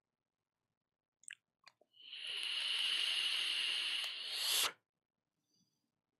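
A few small clicks, then a steady hiss lasting about two and a half seconds that cuts off suddenly.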